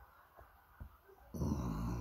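Near-quiet with a few faint clicks, then, about a second and a half in, a man's low voiced sound, a hum or grunt, just before he speaks.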